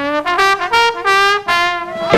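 A lone brass horn playing an unaccompanied break in a Dixieland jazz number: a short phrase of separate notes moving up and down, with the rest of the band silent.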